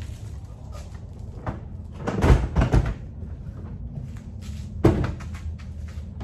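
Hard plastic modular toolboxes (Milwaukee Packout) knocking and thudding as they are handled and set down: a cluster of heavy thuds about two seconds in and one sharper knock near the end.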